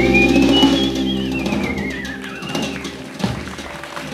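A live band's final chord on keyboard, double bass, electric guitar and drums, held and fading out. Over it a high, wavering note glides up and then slowly down.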